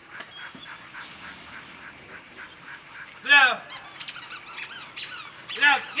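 A dog's squeaky toy squeezed to draw a Rottweiler's attention: one loud squeak about three seconds in, then a run of quick high chirping squeaks, and another loud squeak near the end.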